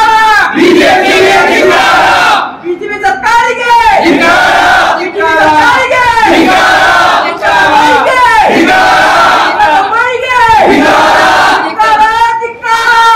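A crowd of men shouting slogans together, loud shouted phrases repeated every second or two with brief breaks between.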